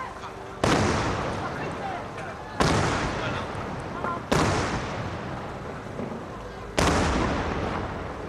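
Cylinder firework shells bursting overhead: four loud bangs roughly two seconds apart, each trailing off over a second or two.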